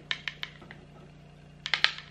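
A few light taps and clicks of a makeup brush and compact being handled while highlighter is applied: three small clicks in the first second, then a quick cluster of sharper clicks near the end, over a faint steady low hum.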